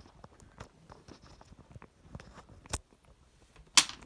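Handling noise of a phone being carried and moved: scattered light clicks and rustles, a sharp click a little before three seconds, and a louder knock near the end as the phone's cable is pulled out.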